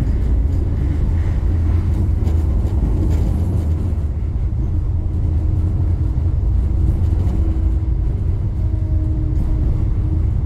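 Bozankaya tram running along street track, a steady low rumble with a faint steady hum over it, heard from on board.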